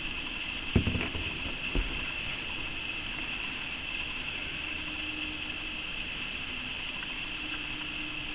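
Raccoons feeding and moving about on wooden deck boards, with two soft low thumps about one and two seconds in, over a steady high-pitched drone.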